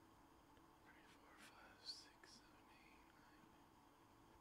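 Near silence: faint room tone, with a person's faint whispering about halfway through.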